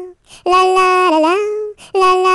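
A high voice singing 'la' unaccompanied: a long held note that dips in pitch and comes back up, set between short breaths.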